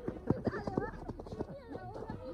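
Quick running footsteps of two people sprinting on a packed-earth track, a rapid run of sharp strikes, with people's voices over them.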